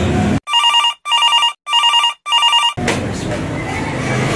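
Telephone ringing: four short, evenly spaced electronic rings of about half a second each. The rings are laid over silence with the room noise cut away, as a dubbed-in sound effect would be.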